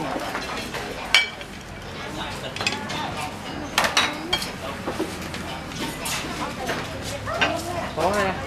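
Background chatter of voices with scattered clinks of dishes and utensils; the sharpest clink comes about a second in, and a few more come close together near the middle.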